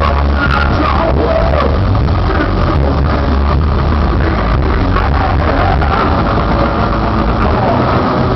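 A southern/stoner metal band playing live at full volume: distorted guitars, bass and drums in a dense, unbroken wall of sound with a heavy low end, recorded lo-fi from the crowd.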